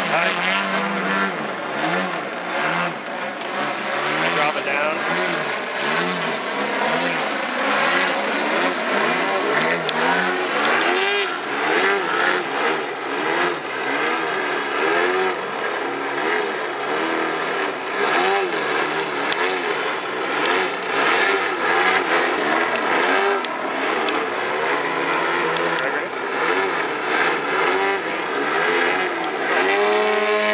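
The 120cc Desert Aircraft twin-cylinder two-stroke gas engines of two EG Aircraft Slick 540 radio-control aerobatic planes running together in flight. Their pitch swings up and down continuously as the throttles and the planes' passes change.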